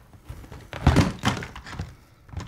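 Plastic supplement tubs knocking against each other and the cardboard box as they are handled and lifted out. There are several knocks just under a second in and a couple of lighter ones near the end.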